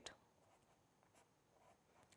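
Near silence with faint strokes of a marker pen writing on paper.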